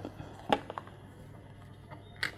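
Faint handling of a cardboard weaving loom as yarn is slipped out of its slots: a brief crisp click about half a second in, then a few faint scratchy ticks over a low steady hum.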